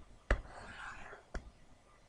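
Two sharp clicks about a second apart as a calculator program is opened on the computer, with a soft breathy whisper between them.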